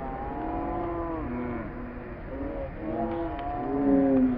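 Several voices shouting and calling out at once on a soccer pitch, drawn-out calls overlapping one another.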